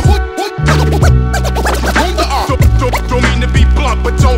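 Hip hop beat with turntable scratching, the scratches sweeping quickly up and down in pitch over bass and drums. The bass drops out for a moment just after the start, then comes back in.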